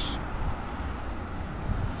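City street ambience: a steady low rumble and hiss of distant road traffic.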